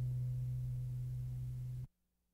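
The last low note of an acoustic guitar rings out steadily as a single pitch, fading a little. It is cut off abruptly near the end.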